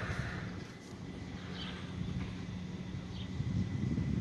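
Quiet outdoor background: a steady low rumble with two faint, short high chirps about a second and a half and three seconds in.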